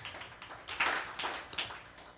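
Soft, irregular rustling and light tapping, without speech.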